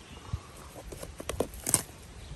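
A few light clicks and taps, irregularly spaced and coming closer together in the second half, over a faint outdoor hiss.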